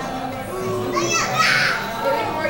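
Indistinct voices over background music, with a brief high-pitched voice rising above them about a second in.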